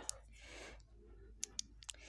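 Faint, sharp clicks from a small plastic pack of pearl-effect teardrop beads being handled: one click at the start and three in quick succession near the end.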